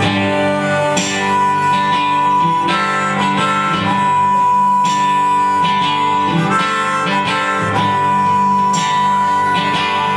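Acoustic folk band playing an instrumental passage: strummed acoustic guitars with a harmonica holding long notes over them.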